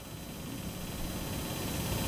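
Steady hiss and room noise, growing slowly a little louder.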